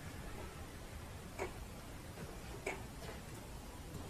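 Faint, irregular tapping ticks that sound like a clock but come randomly rather than in rhythm: two clear sharp taps about a second and a half in and near three seconds, with fainter ones between, over a low hiss. Their source is unexplained.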